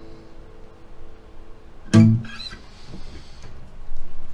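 Acoustic guitar's last chord ringing out and fading away, then one sudden loud strike on the strings about two seconds in that dies quickly.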